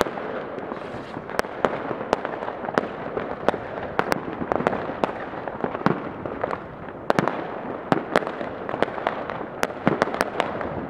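Many fireworks going off across a town at once: a continuous crackling wash with irregular sharp bangs from bursting shells and firecrackers, a few each second.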